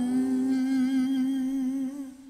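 A man's voice holding a long closing note, with slightly wavering pitch, over a sustained electronic keyboard chord. The upper keyboard tone drops out about half a second in, and the note fades away at the very end.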